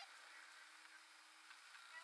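Near silence: faint background hiss with a faint steady low hum.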